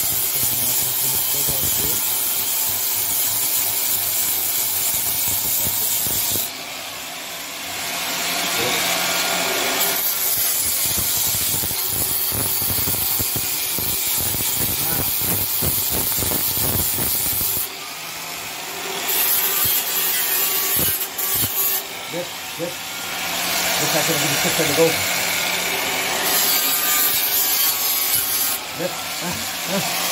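A handheld power tool run against a metal part of a water-pump motor, cleaning it, in long steady runs. It stops about six seconds in and restarts after a few seconds, stops again at about eighteen seconds, then runs on in shorter stretches.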